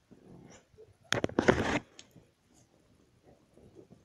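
Close handling noise from the camera: a few clicks about a second in, then a short rush of rustling that stops under a second later, as it brushes against bedding and plush toys.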